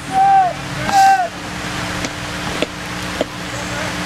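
Two short shouted calls from players on the pitch about a second apart, each one brief, rising-then-falling tone. Steady rain hiss with a low hum runs underneath, and a few faint taps come later.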